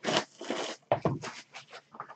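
Trading cards and pack wrappers being handled: a long rustling scrape, then a sharper slide or slap about a second in, followed by light scattered clicks.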